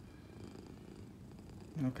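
Domestic cat purring steadily, a low continuous rumble.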